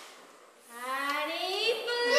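A group of young children's voices starts up together about half a second in, rising in pitch and growing louder, as in group singing.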